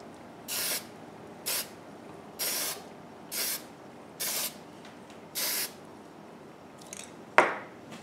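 Aerosol spray can of finish giving six short, light bursts of spray, about one a second, to even out the coat on a woodcarving. Near the end, a single sharp knock.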